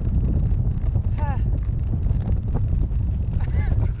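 Wind buffeting the microphone of a camera carried aloft on a parasail, a steady low rumble.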